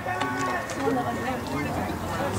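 Distant voices calling out across a baseball field, with drawn-out calls and no clear words.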